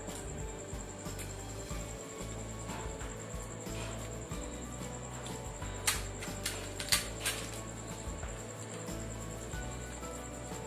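Background music, with a steady high-pitched whine under it. Between about six and seven and a half seconds in come four sharp crackles: crisp fuchka (pani puri) shells being cracked open by hand.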